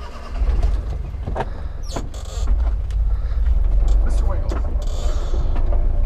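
Honda mini truck pulling away and driving, heard from inside the cab: a low engine rumble that gets louder as it moves off, with creaks and rattles from the cab.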